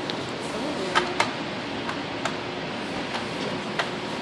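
Sharp plastic clicks, about half a dozen at irregular intervals, as a Doberman puppy works a plastic dog treat-puzzle toy with his nose, over a steady background hiss.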